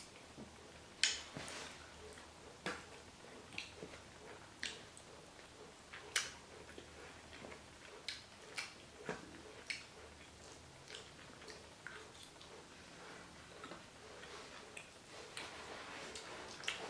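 Metal fork clinking and scraping against a ceramic bowl of food, sharp irregular clicks about a second apart, the loudest about a second in and about six seconds in.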